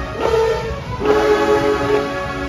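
Marching band brass section playing long, loud held chords, with a new chord struck about a quarter-second in and another about a second in.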